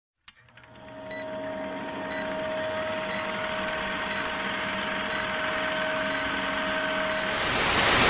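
Old film-leader countdown sound effect: a steady projector-like hum with crackly hiss and a short beep about once a second. Near the end it turns into a burst of TV static hiss.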